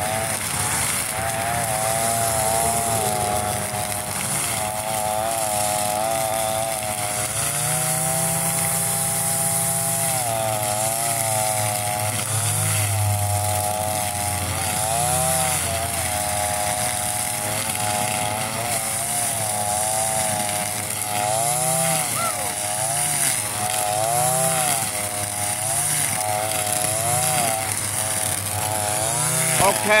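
Shindaiwa 2620 two-stroke string trimmer running at high revs as it cuts through tall grass. Its pitch dips and recovers every second or so under the load of the cut, with one longer steady stretch about a third of the way in.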